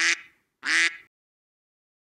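Two short duck quacks about half a second apart, the second one slightly longer.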